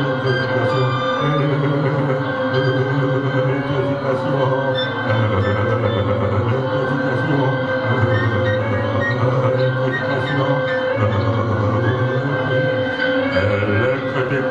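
A band plays an instrumental passage on electric guitar and keyboard synthesizer: held drone-like tones over a low line that steps back and forth between two notes about once a second.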